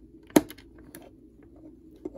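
Plastic LEGO pieces being pressed together by hand: one sharp click about a third of a second in, followed by a few faint ticks of plastic on plastic.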